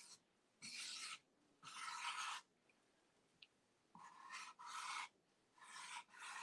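Medium-tip acrylic paint marker drawing faintly across a painted surface in about six short scratchy strokes, each under a second, with a pause in the middle.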